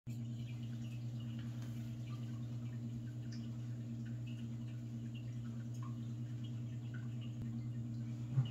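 Room tone: a steady low hum with faint short high chirps scattered through it.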